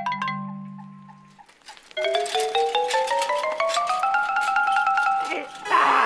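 Comedy background music: a held chord fades away, then after a short gap a quick run of xylophone-like mallet notes climbs slowly in pitch. Near the end a bicycle bell rings.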